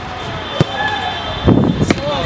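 A basketball shot: the ball hits with two sharp knocks, about half a second in and near the end.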